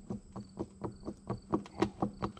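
Ball bearings on the gear shaft of an Oliver 1850 hydraulic pump being turned and rocked by hand, giving a run of light, uneven clicks, about five a second. The bearings turn smoothly but are loose: worn enough to be replaced, and thought to have set up a vibration hard on the shaft seal.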